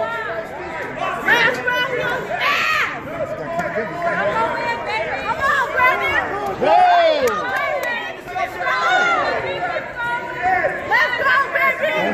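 Ringside crowd chatter: many voices talking and calling out at once, none clearly singled out.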